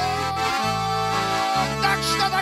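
Bayan (Russian button accordion) playing an instrumental passage between sung lines: one long held melody note over low bass notes that change about once a second, with hand drums tapped along.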